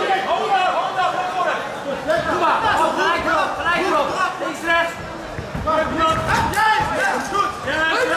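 Several voices shouting and calling over one another in a large hall: ringside spectators and cornermen yelling during a kickboxing bout.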